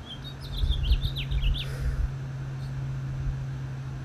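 A bird chirping in a quick run of short, high notes for about the first second and a half, over a steady low hum.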